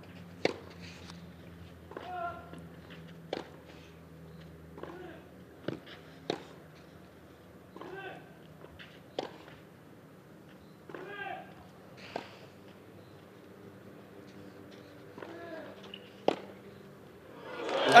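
A long clay-court tennis rally: a sharp racket strike on the ball about every one and a half seconds, many of them with a player's short grunt. The crowd starts to react right at the end.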